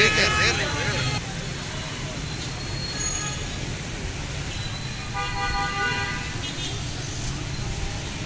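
Busy market-street ambience: a steady rumble of traffic and a crowd's voices, with a vehicle horn sounding for just over a second about five seconds in.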